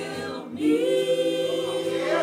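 Church choir singing, holding a long note from about half a second in.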